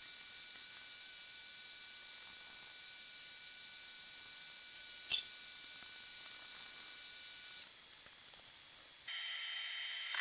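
Quiet steady hiss with faint high steady tones, and a single sharp click about five seconds in, as a hand tap in a tap wrench is turned into holes in an aluminium jig plate.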